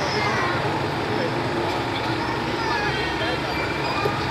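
Indistinct voices over a steady low rumble, with no clear word-by-word speech.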